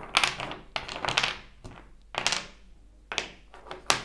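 Small wooden cubes being picked through and set down: about a half-dozen irregular wooden clacks and knocks as blocks strike one another and the wooden table.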